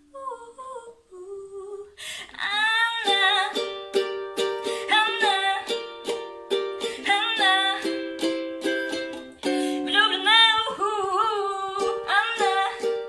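A young woman singing a slow melody with vibrato over a strummed ukulele. The first two seconds are soft, with only a few quiet notes, then steady strumming and fuller singing come in.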